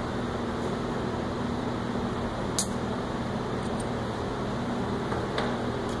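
Steady low room hum, like a fan or ventilation unit running, with one sharp click about two and a half seconds in and a fainter one near the end.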